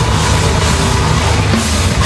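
Live metalcore band playing loud and dense: distorted electric guitars, bass guitar and a drum kit.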